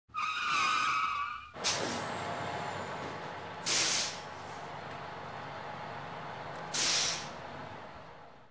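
Bus sound effect: a wavering high squeal for about the first second and a half, then a bus engine running steadily with three short, sharp air-brake hisses. It fades away near the end.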